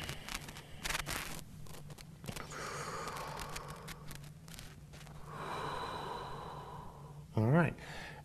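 A man breathing slowly and audibly in a held yoga stretch: two long breaths of about two seconds each, over a steady low hum. A brief voiced sound comes near the end.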